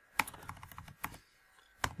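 Computer keyboard keys clicking as a typo is erased and retyped: a sharp keystroke just after the start, a run of lighter taps, and another sharp keystroke near the end.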